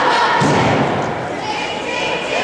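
A single dull thump about half a second in, from the wrestlers' bodies hitting the wrestling mat, with voices calling out over it.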